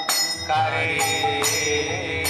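Devotional kirtan: voices singing a slow melody while hand cymbals are struck about twice a second, with a steady drone under it.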